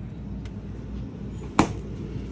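A residential French-door refrigerator door swinging shut with one sharp thud about one and a half seconds in, over a low steady hum.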